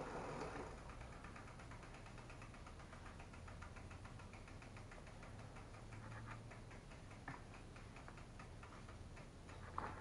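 Faint, rapid ticking from a bicycle's rear freewheel ratchet as the drivetrain turns without driving, slowing and fading out after several seconds, followed by a light knock.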